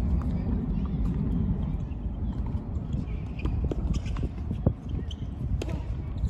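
A few short, sharp knocks of a tennis ball bounced on a hard court, the loudest about three-quarters of the way through, over a steady low rumble.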